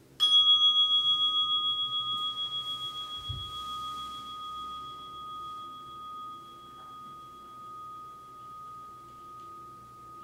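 A meditation bell struck once, leaving a long ring with a slow, even pulsing that fades away slowly. It is the signal that ends the sitting period. A soft low thump comes about three seconds in.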